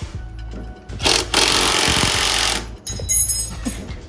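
Cordless drill with a hex bit running for about a second and a half, driving a set screw into a kart's rear sprocket hub, over background music.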